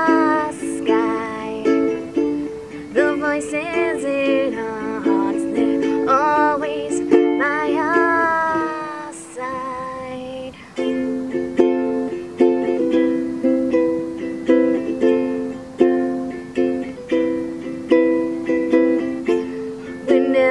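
Ukulele strummed in chords, with a woman singing a melody over it for the first half. After a brief softer moment about ten seconds in, the ukulele carries on alone with even, repeated strums.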